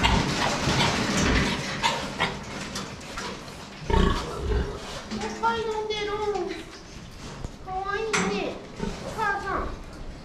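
Sow and piglets in a farrowing crate grunting and squealing, with longer falling squeals about halfway through and again near the end.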